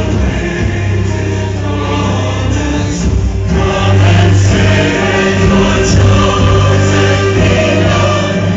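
Music: a choir singing a gospel-style song over a steady low bass, playing loudly throughout.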